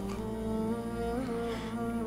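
Soft background music of slow, sustained held notes, with a few notes changing pitch about halfway through.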